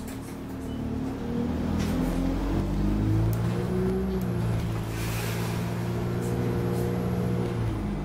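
Alexander Dennis Enviro 200 single-deck bus's diesel engine, heard from inside the cabin, rising in pitch as the bus accelerates. It then holds a steady note and eases off near the end.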